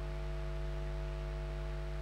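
A steady low hum made of several fixed tones, over a faint hiss. It is typical of mains hum and noise on a sound system.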